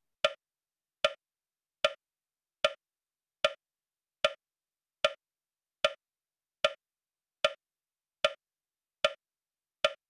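Metronome ticking at a steady 75 beats a minute, one sharp wood-block-like click a little under a second apart, setting the pace for kapalbhati breathing.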